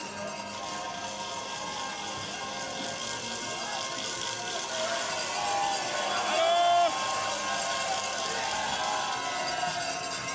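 Trackside sound of a bobsleigh run: a steady hiss of sled runners on the ice track mixed with spectator noise. About six and a half seconds in, a loud, held pitched call from the crowd stands out and cuts off suddenly.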